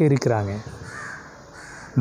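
A crow cawing twice in the background, faintly, after a man's voice stops about half a second in.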